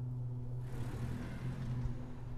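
A low, steady hum, with a soft rush of hiss swelling in about half a second in and thinning out near the end.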